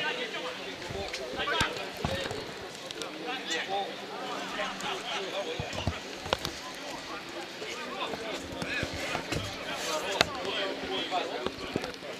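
Footballers shouting to one another across an open pitch, with a few sharp thuds of the ball being kicked.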